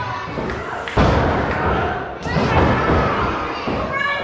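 Heavy thuds in a wrestling ring, bodies hitting the canvas: a sharp, loud one about a second in and another a little after two seconds. Crowd voices sound underneath.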